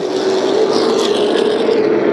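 Super late model stock cars racing at speed under green, their V8 engines making a loud, steady drone.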